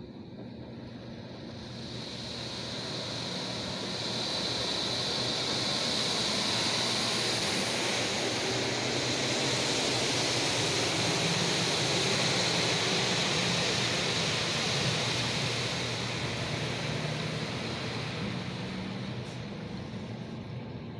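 High-pressure water jets of a Mark VII AquaJet XT touchless car wash spraying the car, heard from inside the cabin: a rush of spray that builds over the first few seconds, stays loud, and eases off near the end.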